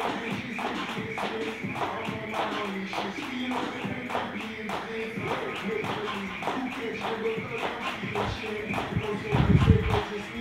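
A jump rope slapping the floor in a steady rhythm, a few strikes a second, during double-unders, over music with vocals. A loud low thump comes near the end.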